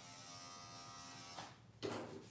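Electric dog grooming clipper with a 10 blade running with a steady hum, which stops about a second and a half in. A short knock follows just before the end, as the clipper is set down on the table.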